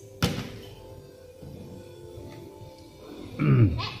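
A single sharp knock on the plastic laundry basket about a quarter second in, then near the end a child's short, loud growling shout that falls in pitch, like a playful roar.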